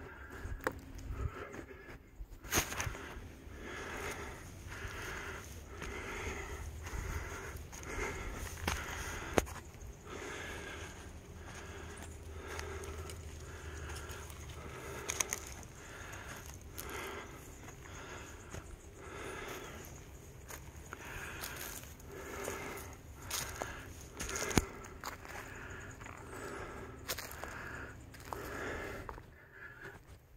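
A person breathing hard in a steady rhythm, about one breath every three-quarters of a second, from the effort of climbing a steep dirt trail. Footsteps scuff on the dirt, with a few sharp clicks now and then.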